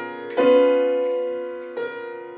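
Kawai grand piano being played: a strongly struck note about half a second in rings and slowly fades, and a softer one follows near the end.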